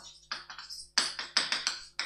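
Chalk writing on a blackboard: a quick run of short taps and scrapes as a word is written, coming faster and louder in the second half.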